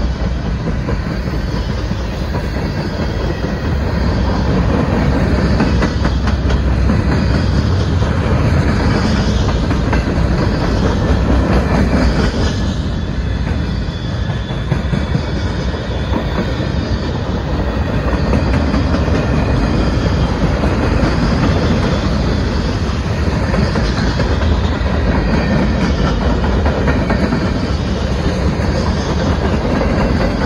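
Freight cars rolling past at close range: a steady rumble of steel wheels on rail with a continuous clickety-clack as the wheels cross rail joints.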